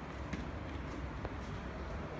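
Low steady rumble of indoor background noise with a few faint clicks.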